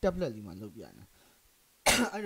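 A man's voice for about a second, then a pause, then one short, sharp cough near the end.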